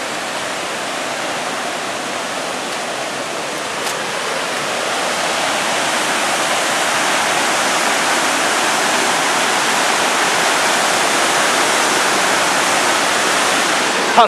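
Rogie Falls waterfall: a steady rush of falling white water, growing louder about five seconds in.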